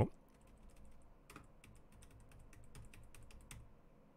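Computer keyboard typing: a faint run of irregular keystrokes that stops shortly before the end.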